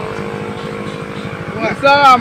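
A motor engine running steadily with a fast, even low pulse, then a man's voice breaks in loudly near the end, shouting.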